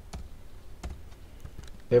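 Computer keyboard keys pressed one at a time, about three separate clicks spaced well apart, entering the last digits of an amount into accounting software.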